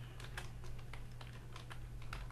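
Computer keyboard being typed on: a quick, irregular run of keystrokes entering a short phrase.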